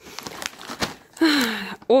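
A plastic snack pouch crinkling as it is picked up and handled. A short voice sound follows at about a second and a half in.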